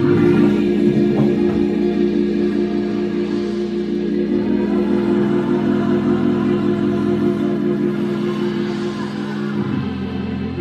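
Electronic keyboard playing held chords with a slow wavering tone, changing chords at the start and again just before the end.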